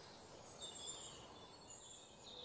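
Near silence: faint outdoor ambience with a few soft, high bird chirps about half a second to a second in.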